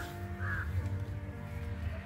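A crow cawing twice in the first half second, over background music with sustained notes.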